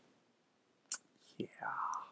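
Mostly quiet room with a faint click about a second in, then a short breathy, unpitched voice sound from a young man near the end.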